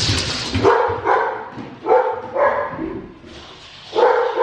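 Young baby fussing: a string of short, whiny cries about half a second apart, dying away near the end.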